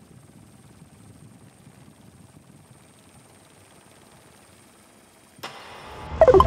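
Faint, steady vehicle engine noise. About five and a half seconds in, a sudden sound effect cuts in and opens the outro jingle.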